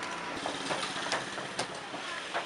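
Street ambience: a steady hum of traffic with scattered short clicks and clatter.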